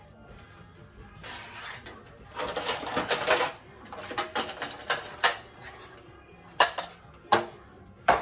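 Hand-sorting of pantry items: a burst of rummaging and clattering a couple of seconds in, then a handful of separate sharp clacks as plastic containers and a small metal tray are picked up and set down on shelves.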